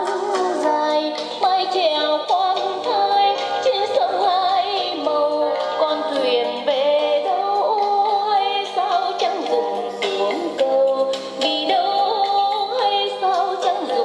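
A song with singing over instrumental backing, played from a cassette through the small built-in speakers of a National RX-F3 stereo radio cassette recorder; the sound is loud but has little bass.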